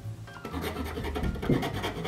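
Scraping strokes of a small tool worked inside the plastic hinge joint of a folding camp kitchen table, shaving off burrs from the joint's inner surface. The strokes start about half a second in and are loudest around the middle.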